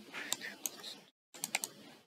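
Computer keyboard and mouse clicking in two short runs of sharp clicks, broken by a brief gap about a second in.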